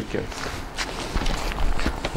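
Handling noise as the seat units are lifted off an UPPAbaby Vista stroller frame: a scatter of fabric rustles and light plastic knocks, with footsteps on the floor.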